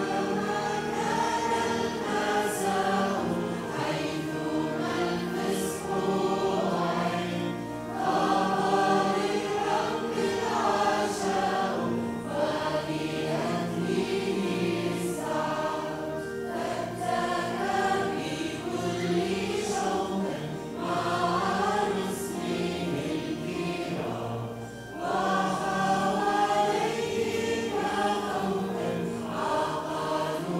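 Church choir of girls' and young men's voices singing a hymn together, in phrases of several seconds with brief dips between them.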